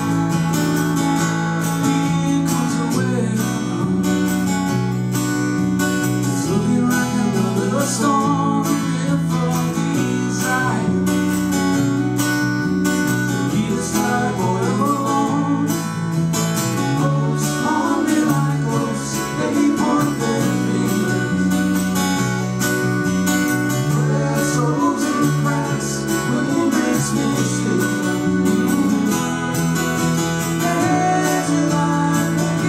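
Live acoustic folk song: acoustic guitar strumming under a piano accordion holding chords, with a voice singing the melody from a few seconds in.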